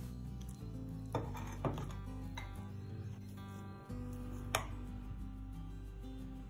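Soft background music, with a few sharp clinks of a steel spoon against a glass bowl as rice flour is stirred into dough; the loudest clink comes a little past the middle.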